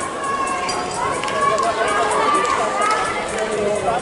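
Several raised, high-pitched voices shouting over each other, spectators calling out to the runners in a track relay race.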